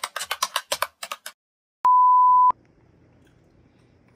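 Rapid keyboard-typing clicks, about eight a second, stopping a little over a second in. About two seconds in comes a loud steady beep of a single mid pitch, lasting about two-thirds of a second and cut off sharply.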